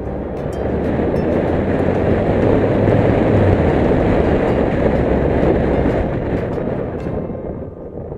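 A loud rushing rumble of a large vehicle passing close by. It builds over the first few seconds, holds, then fades away near the end.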